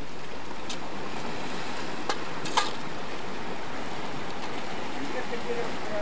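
Steady wash of sea surf and wind, with a few sharp clicks, the loudest about two and a half seconds in.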